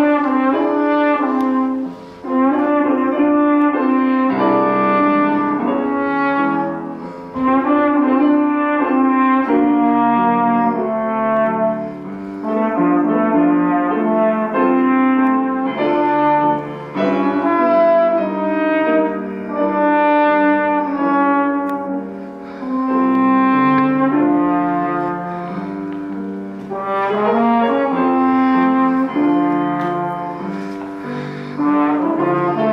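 A trombone playing a melody in held notes with grand piano accompaniment, in phrases with short gaps every few seconds.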